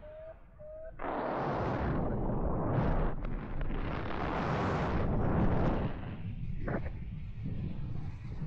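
Wind rushing and buffeting over the camera microphone during a tandem paraglider flight. It surges loud in gusts from about a second in and eases about six seconds in. Two short faint beeps come just before the wind rises.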